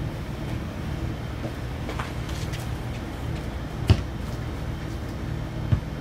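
Steady low outdoor rumble, with two brief sharp thumps about four seconds in and just before the end.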